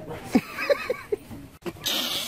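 A woman's stifled laughter, hand over her face, in a quick run of short squeaky, wheezing bursts, with a breathy burst near the end.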